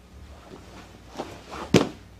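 Two knocks of grappling bodies on a padded mat: a faint one about a second in, then a sharp, louder slap near the end as the bottom man's legs swing up around his partner's head for a triangle choke.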